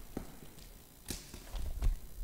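A book being handled and its pages turned on a lectern, picked up close by the lectern microphone: a few soft knocks, a page rustle about a second in, and a cluster of low bumps near the end.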